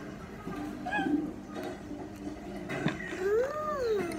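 A toddler's wordless vocal sound while eating: a short voiced sound about a second in, then a longer hum that rises and falls in pitch near the end, with a small click just before it.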